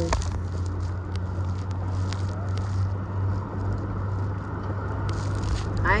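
Boat engine running steadily as a low hum, under rustling and crackling wind noise on a phone microphone, with a few small clicks.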